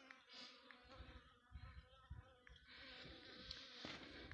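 Honeybees buzzing faintly and steadily at the hive entrance, a colony stirred up by the entrance being cleaned out, with a few soft low bumps.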